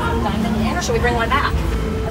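Indistinct voices over a low, steady rumble of street traffic.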